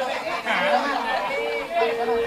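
Several people talking at once in lively overlapping chatter, with a steady held tone coming in near the end.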